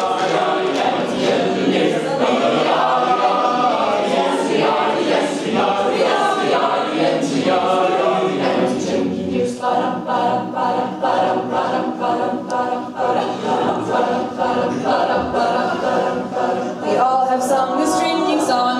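Mixed men's and women's a cappella group singing in close harmony with no instruments. About ten seconds in, the voices change to short, evenly repeated chords.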